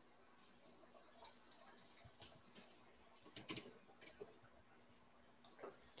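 Faint sizzle of breaded chicken pieces frying in hot oil in a cast iron pan, with a few faint clicks.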